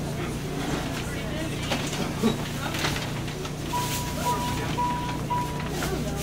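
Inside a moving train car: a steady low rumble of the train running, with scattered clicks and a run of short, high electronic beeps in the second half.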